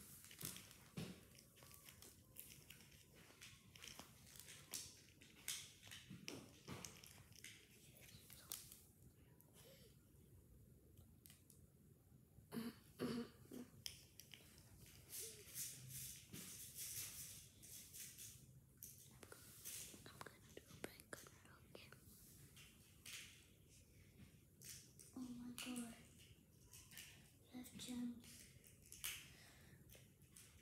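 Faint scattered clicks and rustles of small beads being handled and threaded onto bracelet string.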